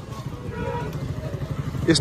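Street noise dominated by a motor vehicle's engine running close by, its low rumble growing louder, with faint voices of people in the background.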